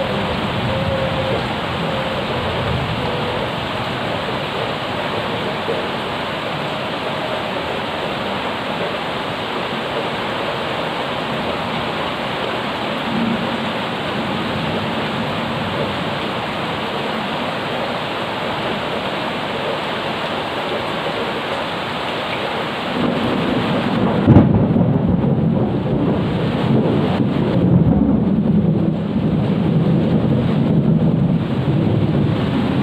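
Steady rain falling on a garden and wet paving, a dense even hiss. About three-quarters of the way through, thunder breaks with a sharp clap and rolls on as a low rumble under the rain.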